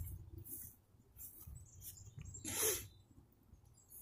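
Faint handling rustle with a few small clicks, and one short breathy sniff about two and a half seconds in.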